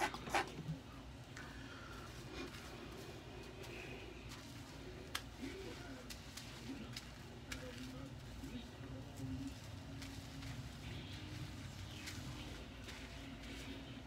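Faint television sound with indistinct voices over a low steady hum, and a few light clicks.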